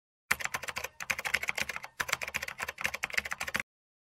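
A rapid run of sharp clicks like typing on a keyboard, several a second, in short runs with brief pauses. They stop shortly before the end.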